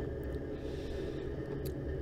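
Steady low rumble and hiss of background noise with no distinct event.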